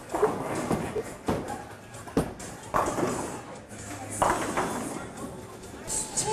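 Bowling-alley din: scattered sharp knocks and thuds under background voices.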